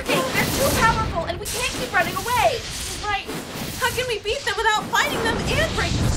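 Women's voices, with no clear words, over a steady hiss.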